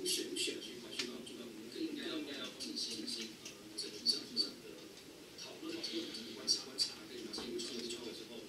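A man talking, his voice played back from a recorded video call over room speakers and picked up from across the room, so it sounds thin and indistinct.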